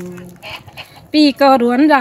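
A sung note fades out, and in the short pause a chicken clucks a few times. A singing voice comes back in a little over a second in.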